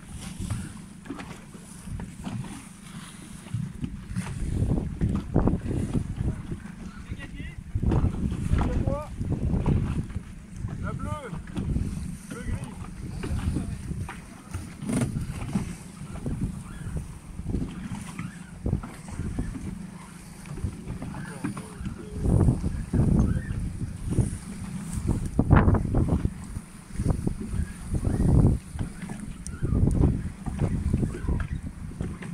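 Wind gusting over the microphone on a small boat out on choppy sea water, a gusty low rumble that swells and drops, with water splashing around the hull and faint voices now and then.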